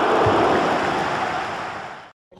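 Steady rushing noise from an animated logo intro's sound effect, fading out near the end.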